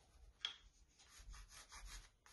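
Faint scratching of a graphite pencil on textured watercolour paper, in short, repeated sketching strokes, one sharper about half a second in.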